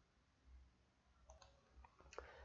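Near silence, broken by a few faint computer mouse clicks in the second half.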